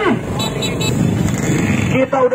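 Many motorcycle engines running together in a packed crowd of riders, a dense low rumble with voices mixed in.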